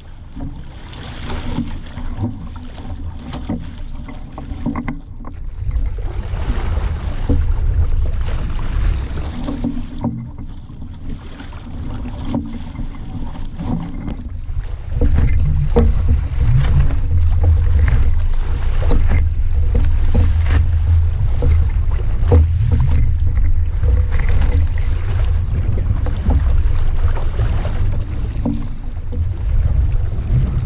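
Wind rumbling over the microphone and water splashing and slapping against the hull of a small sailing dinghy under way, with scattered sharp splashes. The wind rumble gets heavier about halfway through and stays so.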